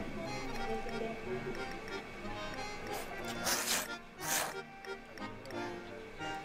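Background music with a light beat, broken about halfway through by two loud, short slurps of thick tsukemen noodles being sucked up from a tomato dipping soup.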